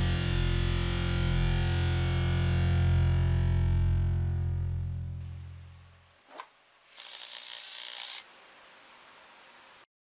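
Distorted electric guitar chord held and left to ring, fading out over about six seconds; then a short click and about a second of hiss.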